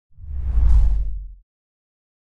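A deep whoosh transition sound effect that swells and fades away over about a second and a half.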